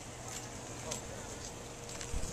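Indistinct voices with a few soft, irregular clicks from the hooves of a thoroughbred racehorse walking on a dirt path.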